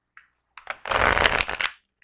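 A deck of tarot cards being shuffled by hand: a single light tick, then a quick flurry of card clicks lasting about a second.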